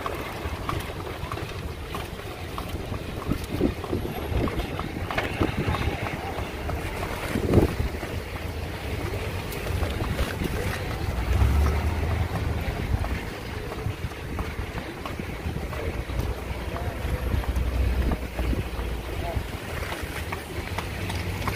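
Wind buffeting the microphone over the low rumble of street traffic, with scattered light knocks and one louder knock about seven and a half seconds in.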